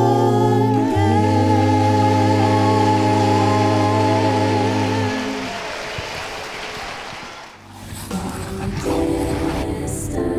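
Gospel vocal group singing a cappella, holding a final chord over a steady low bass note that ends about halfway through and fades away. After a short lull, different music starts near the end.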